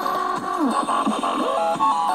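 Background music with a melody of held notes that step up and down.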